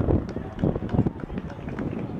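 Lacrosse field sounds: indistinct shouting from players and coaches across the field, with wind buffeting the microphone and a few short knocks.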